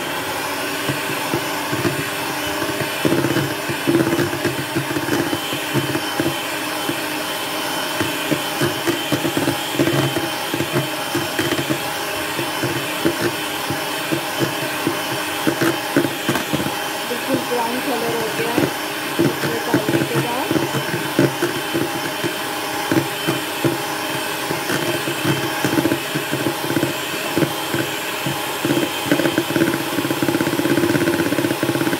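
Electric hand mixer running steadily at one speed, its wire beaters whisking brownie batter in a plastic bowl and knocking irregularly against the sides.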